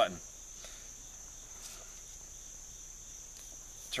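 A steady, high-pitched chorus of insects, with a few faint ticks.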